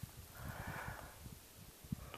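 A faint breath through the nose, lasting just under a second, with soft low thumps scattered through.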